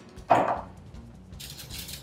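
A brief dry, hissing rustle a little past halfway through, as salt is scattered by hand over the salmon in a stainless steel bowl and brushed off the fingers.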